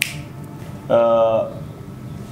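A single sharp finger snap, followed about a second later by a short held vocal sound from a man, like a drawn-out 'mmm' or vowel.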